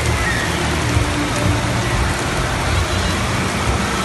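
Steady rush of water spraying and pattering down from an indoor water-park play structure.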